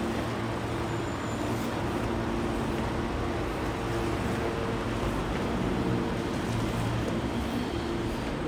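Steady mechanical hum made of a low drone with a few fixed tones, under an even rushing noise; it holds level with no distinct events.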